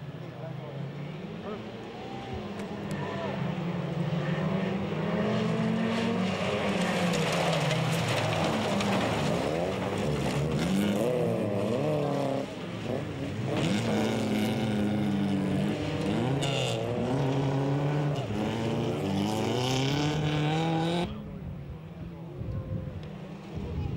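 A pack of folkrace cars racing on a dirt track: several engines rev up and down through the gears and overlap as the cars pass. The sound drops off abruptly about a second before the end.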